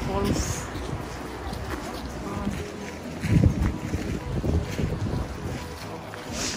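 Wind gusting on the microphone, with gusts strongest about halfway through, over a steady rush of river water running through rapids.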